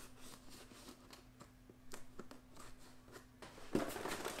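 Kershaw pocket knife slicing packing tape on a cardboard box: faint, scattered small scrapes and clicks, with a louder scrape near the end.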